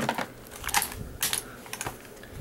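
A few sharp plastic clicks and taps from action figures being handled and knocked together, spread irregularly through the two seconds.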